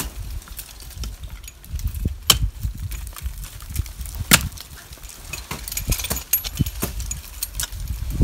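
Ice axe picks and crampons striking and biting into snowy ice: a run of sharp knocks, the loudest about two and four seconds in, over a low rumble.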